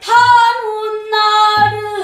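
A woman singing pansori, holding long sustained notes with a brief break about a second in. Two low buk drum strokes sound under the voice, one near the start and one past the middle.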